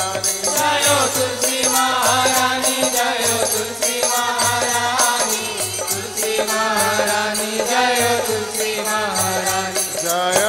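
Hindu devotional chant (kirtan): a male voice sings a gliding melody over a steady drone, with a regular percussion beat throughout.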